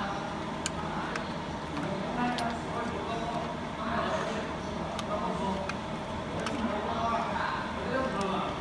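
A steady low machine hum with faint voices talking in the background, and a few light clicks.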